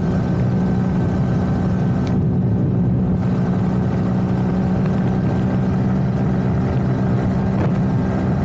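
KTM 250 Duke's single-cylinder engine running steadily at highway cruising speed, heard on board the bike, with an even pitch throughout.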